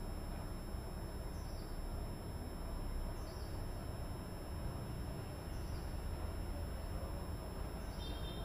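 Quiet room tone with a low steady hum, under a few short, faint, high chirps from a small bird, spaced about two seconds apart.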